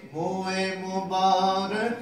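A man's voice reciting a naat unaccompanied, drawing out one long sung note that wavers slightly in pitch and dips briefly near the end.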